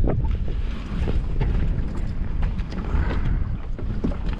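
Wind buffeting the microphone in a steady low rumble, over choppy lake water lapping around a small boat.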